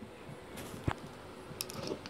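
A few light clicks and taps, the clearest about a second in and fainter ones near the end: small toys and a wooden block figure being handled and set down on a tabletop.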